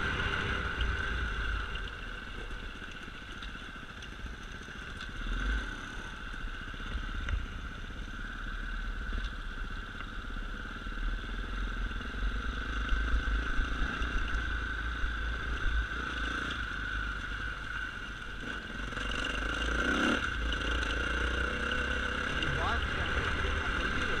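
Dirt bike engine running at a steady pitch while being ridden over rough grass, with low wind rumble on the helmet-camera microphone.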